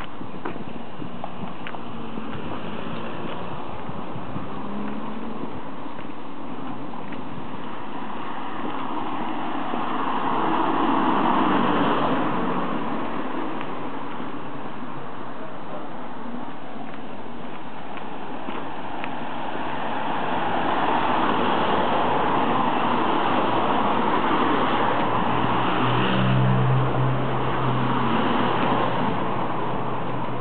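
Street traffic: cars passing along the road, with two slow swells as vehicles go by, one about ten seconds in and a longer one from about twenty seconds in. A low engine hum comes in near the end.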